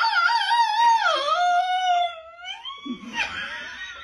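A woman's high, long wailing note, howl-like, wobbling slowly in pitch and fading out about three seconds in.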